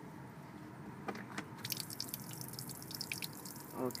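Rainwater trapped inside a 2012 Lincoln MKS's door draining out of the bottom of the door and splattering onto the floor. A few drips come about a second in, then a rapid patter from about a second and a half in. The water has collected inside the door because its drains need clearing.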